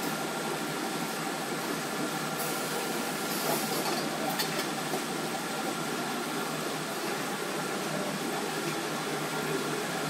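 Automatic corrugated-carton folder gluer running steadily, a continuous mechanical hum with a faint click about four seconds in.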